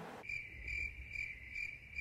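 Crickets-chirping sound effect edited in over cut-out room sound: a high, thin trill pulsing about twice a second. It is the comic 'crickets' cue for an awkward wait.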